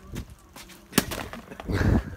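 A single sharp impact about a second in: a full soda can hitting a wall and bursting open. Near the end comes a brief rush of noise.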